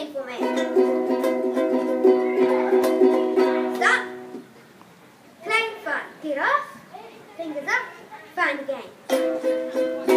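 Ukuleles strummed on a C major chord, a quick run of repeated strums held for about four seconds, then stopping; the strumming starts again near the end.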